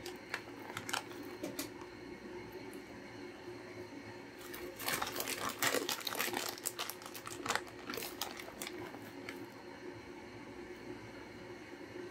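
Crinkling and rustling of a plastic bag of shredded cheese being handled and shaken out over the skillet, in bursts that are loudest about five to six seconds in. A faint steady hum lies underneath.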